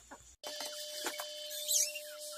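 Chickens clucking briefly, cut off abruptly, then a few light clinks of dishes being washed in a stainless-steel sink over a steady hum, with a high gliding chirp near the end.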